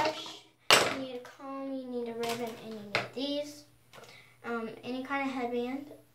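A young girl's voice talking in drawn-out, unclear phrases, with a short sharp hiss-like burst about a second in.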